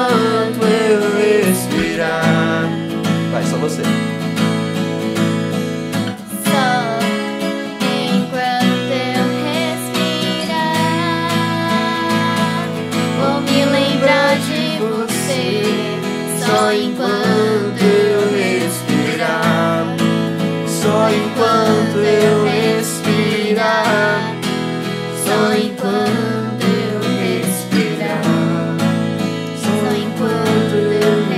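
Acoustic guitar strummed as song accompaniment, with a girl's voice singing the melody over it.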